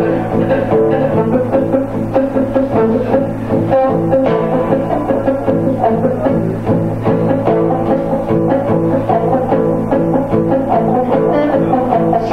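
Two acoustic guitars playing an instrumental passage of a song together, chords moving on without a voice.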